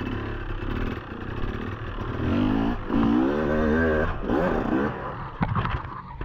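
Enduro motorcycle engine revving hard, its pitch wavering up and down with the throttle on a rough climb. A sharp knock near the end.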